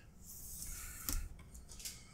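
Nylon paracord strands rubbing and sliding against each other as they are wrapped and drawn through a four-strand round braid: a soft rustle with two small ticks, about a second in and near the end.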